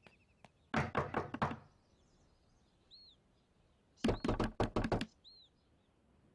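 Fist knocking on a wooden door: a quick run of about six knocks about a second in, then a second, harder run of about seven knocks around four seconds in.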